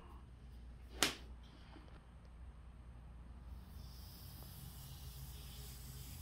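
A foam brush loaded with wood stain drawn along a wooden board, a faint, soft hiss that starts about three and a half seconds in and carries on. A single sharp tap about a second in.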